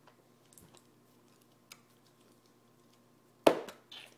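A disposable bowl knocked down onto a tabletop: one sharp knock about three and a half seconds in, then a smaller one just before the end, with a few faint clicks before.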